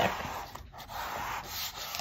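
A hand rubbing a glued, folded newspaper strip against a tabletop to press the glue seam shut: a continuous dry papery rubbing noise.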